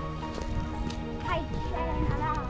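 Background music: steady held chords with a sung vocal line.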